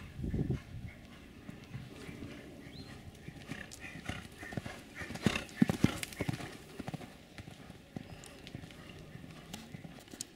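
A horse's hooves beating on a sand arena, a run of hoofbeats that is loudest about five to six seconds in, as the horse passes close.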